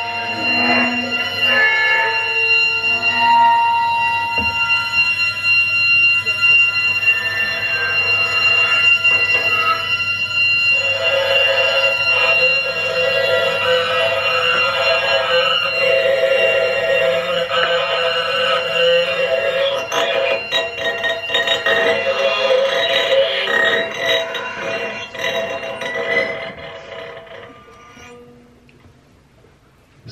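Live experimental noise music from tabletop amplified objects and electronics: layered, alarm-like held tones at several pitches, some sliding, give way after about ten seconds to a dense, rasping texture with scattered clicks. It fades away over the last couple of seconds.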